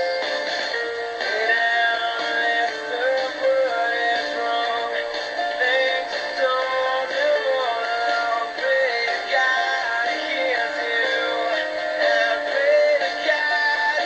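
Background music with a stepping melody in a synthetic-sounding voice and little bass.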